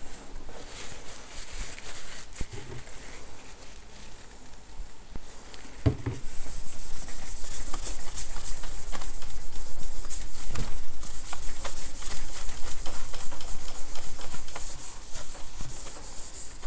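A cloth scrubbing back and forth on a MacBook's glass screen, wiping away the anti-glare coating that toilet bowl cleaner has loosened. The rubbing is light at first and becomes louder and steadier after a light knock about six seconds in.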